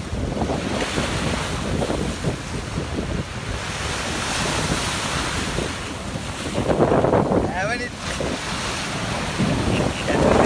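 Sea waves breaking and washing against a rocky concrete seawall, with wind buffeting the microphone; a louder surge of water comes about seven seconds in.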